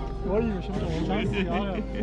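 People laughing briefly, with a voice, over background music with held notes.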